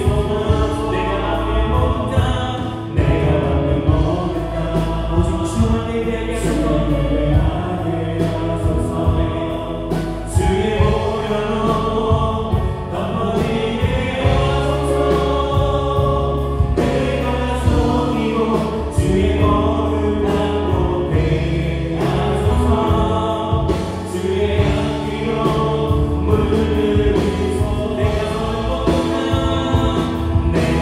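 Live Christian worship band playing a gospel song: electric guitar, keyboards, bass guitar and drum kit with cymbals, with sung vocals over the top.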